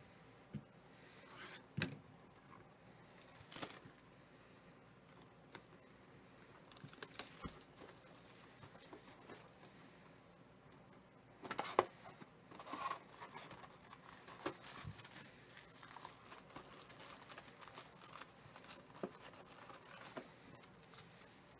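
Cellophane shrink-wrap being torn and crinkled off a cardboard trading-card hobby box, with scattered taps and rustles as the box is handled and opened. The loudest crinkling comes in short bursts about halfway through.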